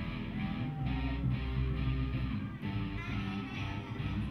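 A children's rock band playing live through amplifiers: electric guitars and bass over a drum kit, with a girl's voice singing into a microphone.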